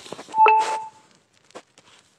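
A short, flat electronic beep about half a second in, over a brief rush of handling noise, then faint scattered clicks and rustles.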